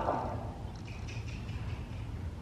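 Quiet low rumble with the muffled footfalls of a horse walking on soft arena dirt.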